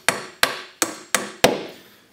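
Hammer driving nails into wooden Langstroth beehive frames: five quick, sharp blows about a third of a second apart, each fading quickly.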